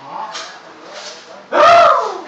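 A small dog gives one loud, high bark near the end, excited in play, with fainter sounds before it.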